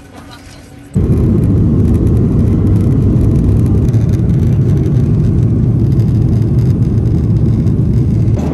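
Loud, steady rumble of jet engines and rushing air inside the cabin of a Southwest Boeing 737 in flight, cutting in abruptly about a second in.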